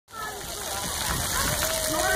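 Water jets of a splash pad spraying up and splashing down onto the ground as a steady hiss, with children's voices and calls mixed in.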